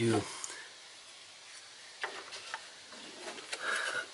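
A single spoken word, then faint clicks and handling noise about two seconds in, with a little more rustling near the end.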